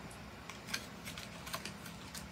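A few faint, light clicks and taps of a small plastic liquid eye colour tube and its cardboard box being handled.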